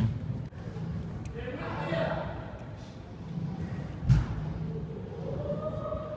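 Players' voices calling out on an indoor soccer pitch, with one sharp thud of the soccer ball being struck about four seconds in.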